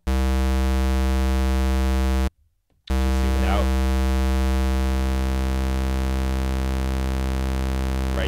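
Bitwig Polysynth oscillator holding a low square-wave note, a steady tone with only odd harmonics. The note cuts out for about half a second just after two seconds in, then sounds again. From about halfway, the Shape knob morphs the wave toward a saw, and the even harmonics creep in.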